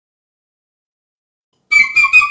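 Silence, then a solo piccolo comes in near the end, starting a quick tongued melody of high, bright notes.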